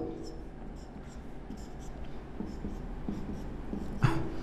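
Marker pen writing on a whiteboard: a run of short strokes as arrows and figures are drawn.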